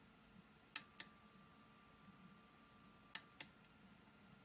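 Two presses of a front-panel button on an Akai S3000XL sampler, each a sharp press-and-release click pair, about two and a half seconds apart. A faint steady high tone is heard between the two presses.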